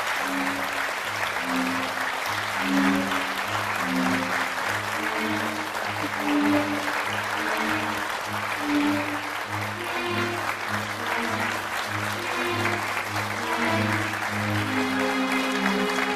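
Studio audience applauding steadily over the show's entrance music, which has a steady bass beat about twice a second.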